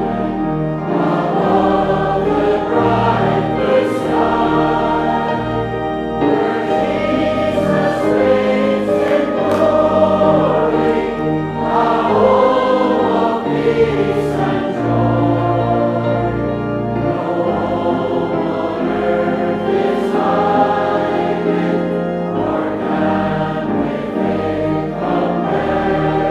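A church congregation singing a hymn together, a verse sung steadily with held notes and no pauses.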